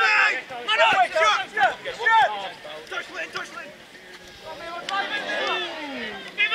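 Players and spectators shouting at an outdoor football match, one long falling call near the end. There are a few sharp knocks of the ball being kicked.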